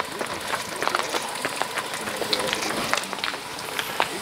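Riding noise from a bicycle on the road: a steady rush of wind and tyre noise with scattered small clicks and rattles.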